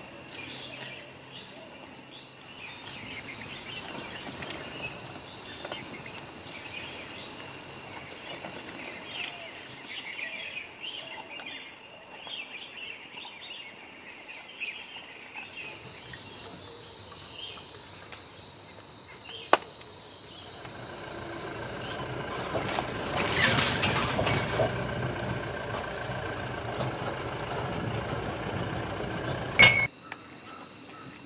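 Jungle ambience: insects droning steadily on high tones with birds chirping over them, then from about twenty seconds in a motor vehicle's engine rumble rises and runs on. A sharp click comes just before the end.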